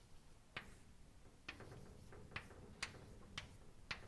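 Chalk tapping on a blackboard as it writes: about seven faint, sharp taps at uneven intervals.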